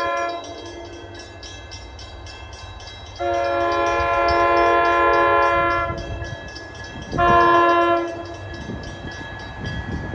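Commuter train locomotive's air horn sounding a chord in separate blasts: one ending just after the start, a long blast about three seconds in, and a short one around seven seconds. This long-long-short pattern is the standard grade-crossing warning as the train approaches.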